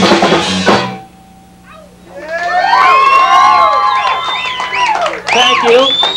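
A live ska band with drums plays its last hits and stops about a second in. After a short lull, many overlapping whistles and whoops rise and fall in pitch as the audience cheers the end of the song.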